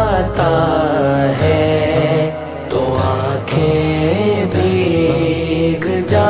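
Wordless, chant-like interlude of a naat: layered voices hold and glide between notes over a deep, pulsing low end, without sung words.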